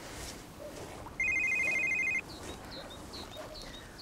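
Mobile phone ringing: one burst of a rapidly pulsing, two-tone electronic trill that lasts about a second.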